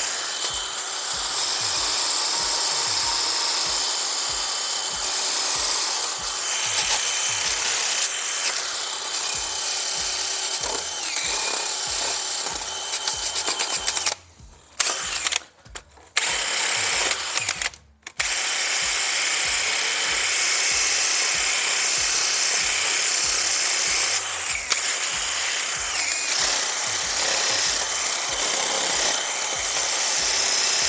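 Cordless drill spinning a wire brush against the front brake's metal parts, scrubbing them clean to stop the brakes squealing. It runs steadily, stopping briefly a few times about halfway through.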